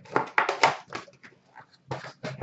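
Foil card-pack wrappers crinkling and cards being handled, in a few short irregular rustling bursts.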